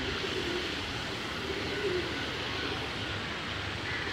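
Steady rushing of a shallow river, with a couple of faint, low wavering tones over it.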